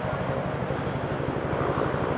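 Street ambience dominated by a steady, evenly pulsing low engine rumble from a vehicle running nearby, with faint voices.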